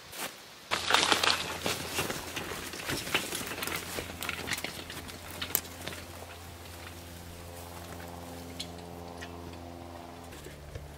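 Rustling and knocking of squash being handled and set into a wooden garden wagon, with footsteps through dry, trampled garden plants. From about halfway, a steady low motor hum comes in and holds.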